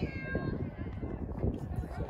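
High-pitched shouting voices from a girls' soccer match, with one faint drawn-out call near the start, over a steady low rumble.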